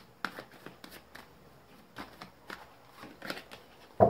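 A deck of tarot cards being shuffled by hand, with a string of short, irregular clicks and slaps as the cards strike each other.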